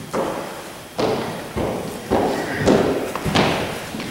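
Footsteps, about six heavy steps a little over half a second apart.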